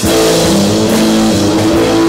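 Live rock band playing loud, with electric guitars and drum kit to the fore; the full band comes in suddenly at the start and holds at full volume.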